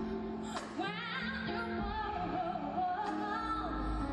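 Live gospel-ballad performance: a Korean female lead vocalist sings sustained notes with wide vibrato and quick runs over keyboard and band accompaniment.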